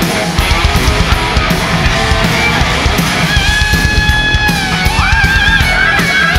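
Glam metal band playing live at full volume: distorted electric guitars over driving drum kit. From about three seconds in, a lead guitar line holds a high note, then bends and wavers with vibrato.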